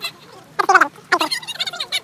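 A person's wordless, high-pitched vocal cries: one loud cry falling in pitch, then a quicker wavering run of calls.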